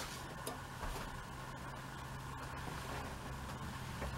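Quiet room with a steady low hum, and faint soft ticks and rustles of cotton fabric being folded by hand on an ironing board.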